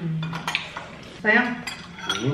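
Spoons clinking and scraping against ceramic bowls as people eat, a few light clinks. A short voiced sound, like a hum, comes about a second and a quarter in.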